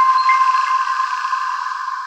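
Last ringing chord of an electronic outro jingle: a sustained chime-like tone with a few light pings in the first half-second, slowly fading away.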